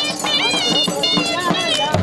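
Punjabi folk music played live: regular dhol drum beats under a reed pipe melody that slides up and down in pitch.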